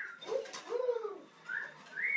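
African grey parrot calling: a short low call and then a longer low call that arches up and down in pitch, followed by high whistles that rise and fall, one about one and a half seconds in and another at the end.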